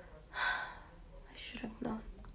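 A woman's audible breath close to the microphone, a short gasp-like rush of air, then about a second later another breath ending in a brief voiced sound.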